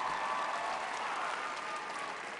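A theatre audience applauding, the clapping slowly dying away.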